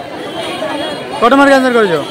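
A person's voice speaking one short utterance, rising then falling in pitch, about a second in, over background crowd chatter.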